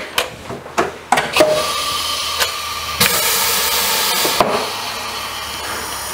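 A few sharp clicks and knocks, then from about a second in a steady hiss of compressed air from a Morgan G-100T pneumatic injection molding press as it is worked for a purging cycle.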